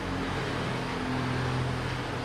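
A steady low hum, with no speech over it.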